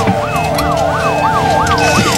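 Ambulance siren in a fast yelp, its pitch sweeping up and down about three times a second, with a slower single rise and fall running over it.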